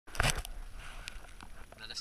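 Crinkling rustle of a plastic rain jacket rubbing against the camera as it is handled. It is loudest in a short burst near the start, followed by a few faint crackles.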